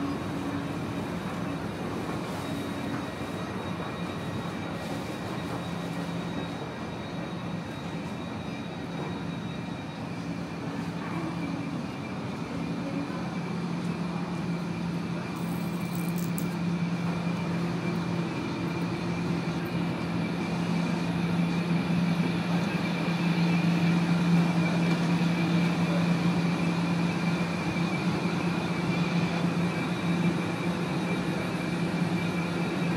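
Electric S-Bahn train standing at an underground station platform, its onboard equipment giving a steady hum with a few held tones, growing louder in the second half.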